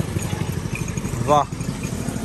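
A small engine running steadily with a rapid low throb.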